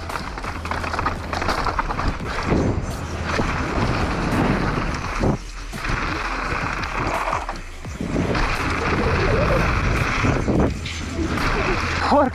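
Riding noise of a downhill mountain bike descending a loose, rocky trail, picked up by a helmet camera: tyres on gravel and stones, bike rattle and wind buffeting the microphone. The noise comes in surges, with brief lulls about five and eight seconds in.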